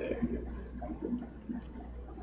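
Faint gurgling and trickling of aquarium water over a steady low hum.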